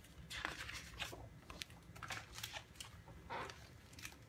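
Faint rustles and taps of a large picture book being opened, the cover and paper pages handled and turned in a series of short scrapes.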